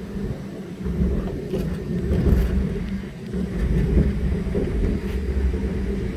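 Amusement-ride car running along its elevated track: a steady low rumble with a hum and some light rattling.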